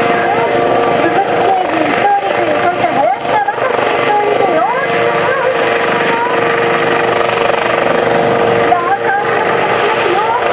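Kawasaki OH-1 twin-turbine helicopter flying past, its engines and rotors running with a loud, steady whine, with people's voices over it.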